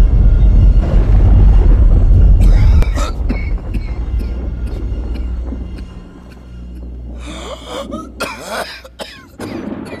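A deep low rumble for the first three seconds, then a man coughing and hacking in fits, heaviest in the last few seconds, over dramatic music.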